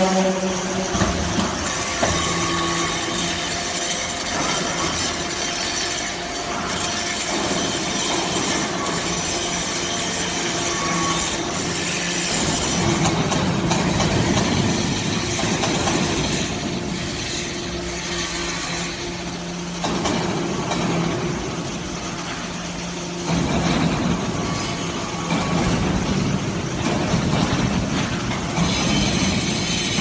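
Hydraulic metal-chip briquetting press and its chip conveyor running: a steady motor hum under a dense mechanical noise that changes character a few times.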